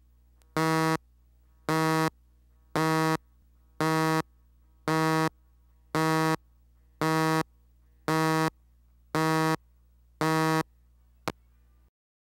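Countdown tone on a videotape leader: ten identical short buzzing beeps about one a second, over a faint low hum, followed by a single short click.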